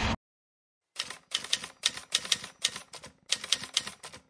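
Typewriter sound effect: a run of sharp, irregular key clacks, about four or five a second, starting about a second in after a moment of silence, as a title is typed out letter by letter.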